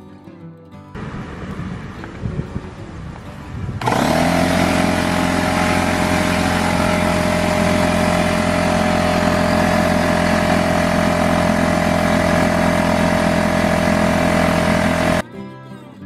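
A Craftsman CMEC6150 6-gallon pancake air compressor's oil-free pump starts up about four seconds in and runs loudly and steadily, with a fixed hum and whine, as it fills the tank from 0 toward 150 PSI. It stops abruptly about a second before the end.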